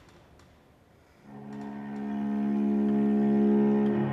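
A short hush, then about a second in a cello enters with one long bowed note that swells louder and is held.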